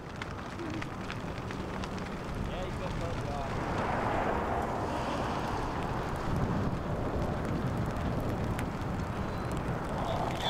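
Grass fire burning through dry prairie grass: a steady rush with many sharp crackles, swelling a few seconds in.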